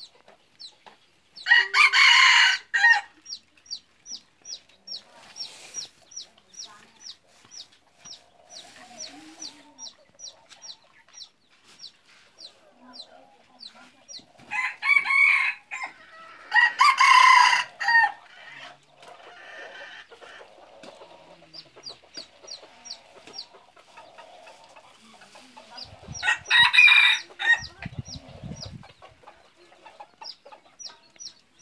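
Jungle fowl roosters crowing: four crows of about a second each, one near the start, two close together about halfway through, and one near the end. Throughout, a faint series of short high chirps repeats about twice a second.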